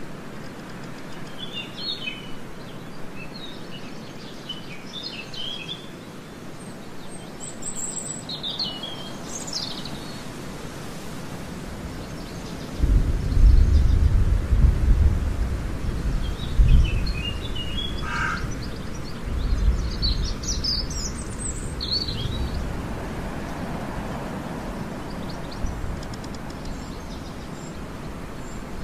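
Birds chirping in short scattered bursts over a steady background hiss, with a low rumble swelling up about halfway through and again a little later, louder than the chirps.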